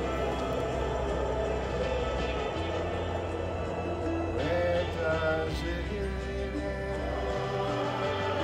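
A recorded pop song with layered vocal harmonies over sustained bass and keyboard chords, played back. The bass changes note about every two to three seconds.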